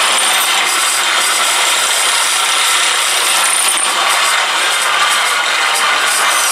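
Bench drill press running with a 6.5 mm twist bit cutting into the hub of a metal pulley held in a vise. It makes a loud, steady drilling noise. This is the tapping hole for an M8 set-screw thread.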